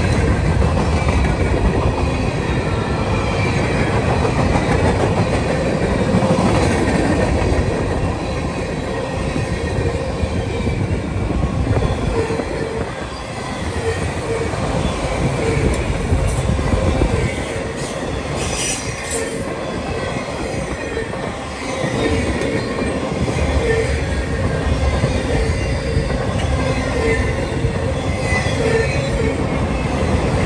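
Freight cars rolling past close by: a steady rumble of steel wheels on rail, with wheel squeal coming and going and a brief high-pitched squeal about 17 to 19 seconds in.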